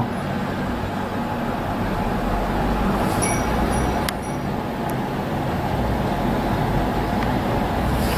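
Steady low rumble and hiss of background noise, with a faint click about four seconds in.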